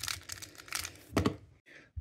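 Square-1 puzzle being turned and sliced at speed, its plastic layers giving a quick run of small clicks, then a single louder clack a little after a second in.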